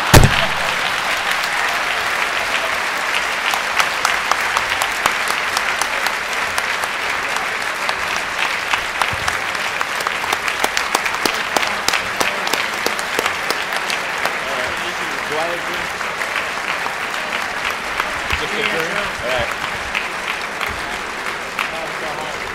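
Audience applauding: a long, dense round of clapping that eases off slightly near the end.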